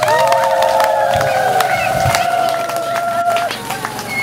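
A crowd of women ululating, several high, long-held trilling calls together that stop about three and a half seconds in, over steady hand clapping, in celebration.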